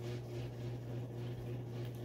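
Room tone with a steady low hum and no other distinct sound.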